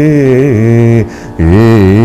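A man singing a phrase of raga Yaman in Hindustani style, his voice gliding between notes; the phrase ends about a second in and, after a brief breath, a new one begins.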